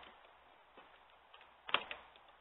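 Fingers picking at the perforated door of a cardboard advent calendar: faint scratching and clicks, then a short, sharp crackle of cardboard about three-quarters of the way through as the door gives.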